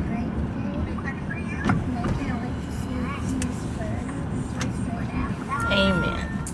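Steady road and engine noise heard from inside a moving car's cabin, with faint talking over it.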